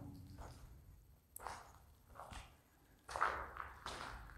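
Faint footsteps on a rubble-strewn concrete floor, about one step a second, four in all, the loudest a little after three seconds in.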